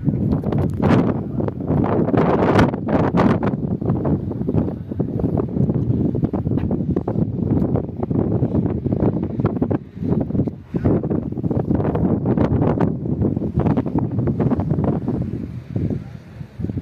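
Wind buffeting the microphone: a loud, uneven rumble that gusts and crackles throughout, dipping briefly about ten seconds in.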